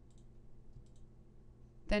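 A few faint, short clicks over quiet room tone, then a woman's voice starts near the end.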